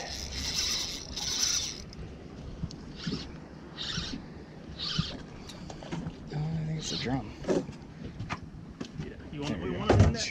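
Spinning reel being cranked against a heavy hooked fish, its gear and drag buzzing in short spurts about a second apart, the longest at the start.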